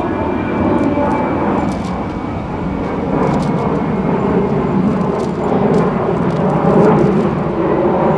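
Steady low rumble of a passing motor vehicle, swelling slightly near the end, with a few light rustles of Bible pages being turned.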